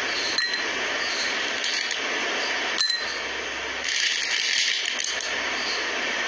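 Small pebbles dropped by hand into a glass tumbler of water, clinking against the glass and the stones already inside, with two sharp clinks about a second in and near the middle, over a steady hiss.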